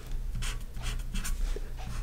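Marker pen writing on paper: a series of short strokes of the tip across the sheet as an arrow symbol is drawn.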